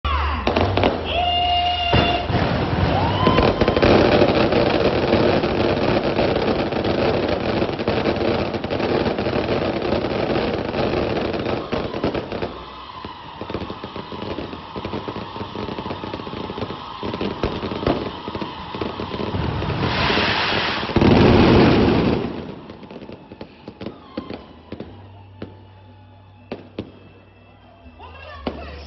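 Temple fireworks going off in a dense, continuous crackling barrage that thins to scattered pops after about twelve seconds. A loud rushing burst comes about twenty seconds in, and then the pops die away.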